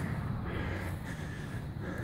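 Breathing of a person carrying the phone while walking, close to the microphone, over a steady outdoor hiss.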